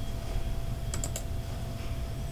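A quick run of about three sharp clicks from computer keys or buttons, about a second in, over a low steady hum of microphone and room noise.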